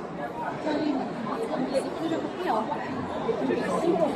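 Crowd of visitors chattering, many indistinct voices overlapping at once.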